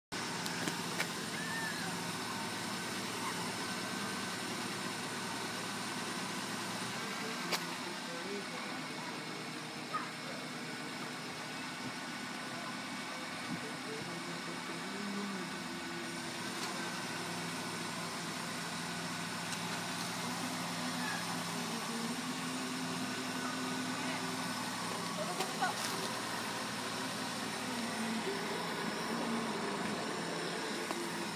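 A car engine idling steadily, with faint muffled voices and a few small clicks.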